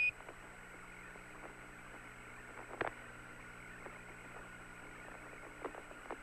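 Apollo 17 space-to-ground radio link open with no one talking: a steady hiss and hum with a faint constant tone. One sharp click about three seconds in and a couple of faint clicks near the end.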